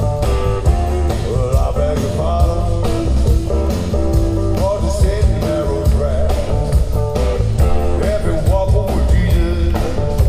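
Live rock band playing: electric guitar picking out a melodic line over bass guitar and a steady drum beat.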